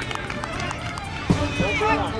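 Voices of players and people on the sideline calling out across an open playing field, with a single sharp knock a little past halfway through.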